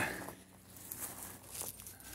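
Faint rustling and crackling of dry leaves and twigs on the ground, a few light scattered crunches.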